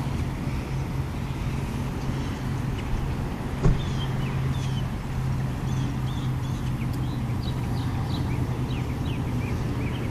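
Steady low hum of distant traffic, with many short high bird calls scattered through and a single knock about three and a half seconds in.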